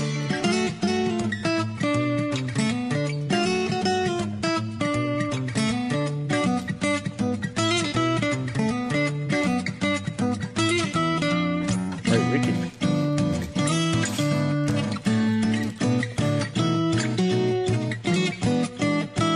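Acoustic guitar music, strummed and plucked in a steady rhythm.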